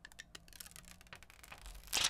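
Plastic backing sheet being peeled off a phone screen protector, with a faint crackle of small clicks and rustling. The loudest crinkle of handling noise comes near the end.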